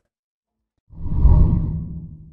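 Deep whoosh sound effect starting about a second in, swelling quickly and then fading away, as a video transition.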